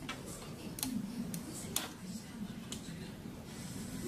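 A few light, sharp clicks and taps, about five over three seconds, from a thread spool being handled and lifted off a sewing machine's spool pin.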